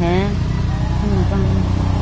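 A woman's voice speaking, a phrase ending just after the start and fainter speech following, over a steady low hum.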